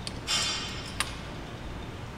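A cable machine's weight-stack selector pin being moved to change the load: a brief metallic scrape, then a single sharp click about a second in as the pin seats in the stack.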